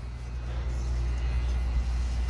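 Steady low rumble of an idling vehicle engine.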